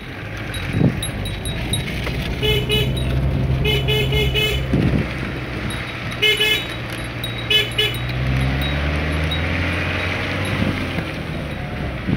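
A motor vehicle's engine running steadily on the move, with several short horn toots in the first two-thirds. The engine's pitch rises later on as it speeds up.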